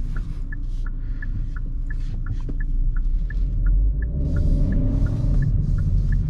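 Hyundai i30 Wagon's turn-signal indicator ticking inside the cabin, about three clicks a second, over the low rumble of the car driving. The rumble grows louder about four seconds in as the car picks up speed.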